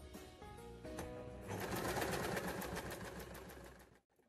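Domestic electric sewing machine stitching in a fast, even run of needle strokes, starting about a second and a half in and fading out near the end. Soft background music plays underneath.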